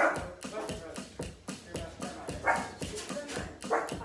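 Drumsticks striking the pads of an electronic drum kit in a steady beat, about four strokes a second. Three short, loud bark-like calls cut in, near the start, about halfway through and near the end.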